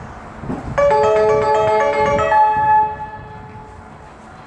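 Station platform announcement chime: a short melody of clear bell-like notes, starting about a second in and lasting about two seconds. It is the signal that comes just before an announcement of an approaching train.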